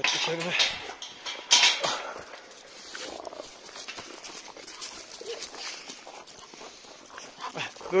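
Several dogs crowding close, with a few short dog vocal sounds among them, over footsteps crunching on gravel. A sharp metal clank about a second and a half in as the wire-mesh gate is worked.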